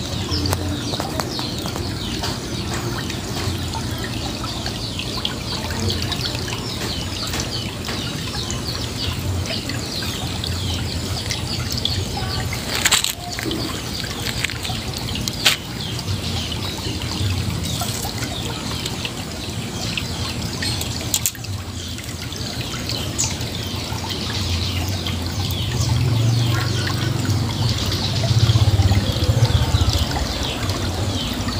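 Water trickling steadily in a small irrigation ditch, with a few sharp clicks partway through.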